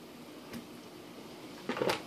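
Quiet kitchen room tone with a soft click about halfway through and a brief clatter of cutlery near the end.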